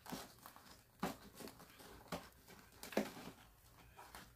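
Faint handling of a translucent cash envelope: four short crinkles and light taps, about a second apart.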